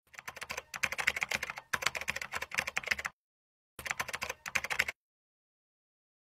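Keyboard typing: rapid runs of key clicks, a long run of about three seconds, a short pause, then about a second more before it stops.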